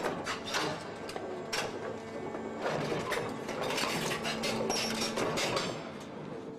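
Marble-quarry machinery running: a steady mechanical noise with many irregular clanks and knocks over a faint hum.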